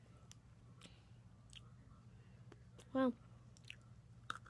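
Faint mouth sounds of someone chewing an Oreo sandwich cookie: small soft clicks scattered through, over a steady low hum.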